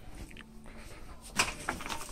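Quiet shop background with a brief crinkle of plastic packaging about one and a half seconds in, as a plastic-wrapped hockey goalie mask is handled.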